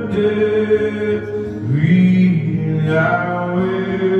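Acoustic guitar and violin playing a slow song live, with held notes and a long note that slides upward about halfway through.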